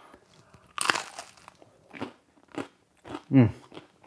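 Biting into a piece of freshly baked focaccia with a super crunchy crust: one loud crunch about a second in, then a few crunching chews.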